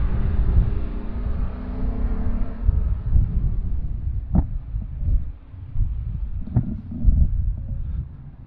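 Wind buffeting the microphone, a low gusting rumble that rises and falls, with two brief clicks in the second half.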